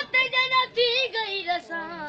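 A boy's solo voice reciting a noha, a Shia mourning lament, unaccompanied, in short high sung phrases with bending pitch that step down lower about two-thirds of the way through.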